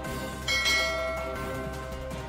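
A bright bell chime sound effect rings about half a second in and fades away over most of a second, over steady background music.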